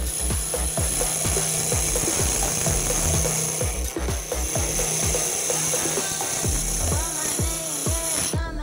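A carbide-tipped round cutter shearing an amboyna burl pen blank spinning on a wood lathe: a steady rasping hiss of shavings coming off, over background music with a steady beat.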